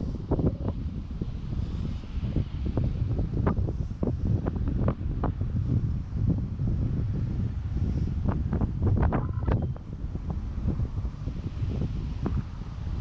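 Wind buffeting a walking GoPro's microphone: a loud, gusty low rumble that rises and falls throughout, with scattered short clicks and knocks, most of them about nine seconds in.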